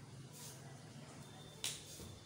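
A single sharp snap of a taekwondo uniform (dobok) about one and a half seconds in, cracked by a fast kick during a poomsae form, over a faint steady hum.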